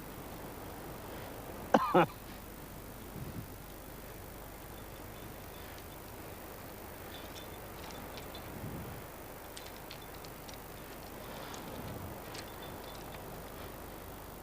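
Steady faint hiss, with a short 'yeah' and a cough just before two seconds in. Then, in the second half, come scattered light clicks and clinks of climbing hardware on a climber's harness.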